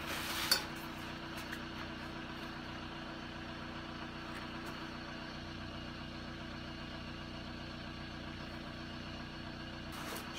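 Volkswagen Golf 1.9 SDI four-cylinder diesel idling steadily, with a short noisy clatter in the first half-second.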